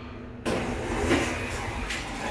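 ThyssenKrupp elevator car doors sliding open: a sudden rush of door-mechanism noise starts about half a second in, with a knock near the end as the doors reach the open position.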